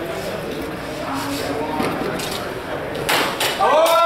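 Steel longsword bout in a large hall: murmuring voices, then sharp impacts of the exchange about three seconds in. A loud shout rising in pitch comes near the end.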